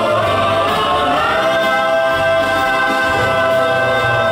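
Male vocal quartet singing a gospel song in close harmony into microphones; about a second and a half in the voices rise and settle into a long held chord.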